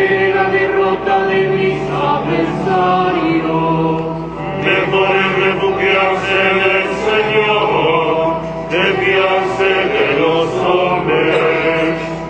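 Church choir singing a liturgical hymn in Spanish, with held chords sustained underneath.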